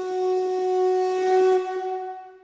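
A conch shell (shankha) blown in one long, steady note that fades out near the end.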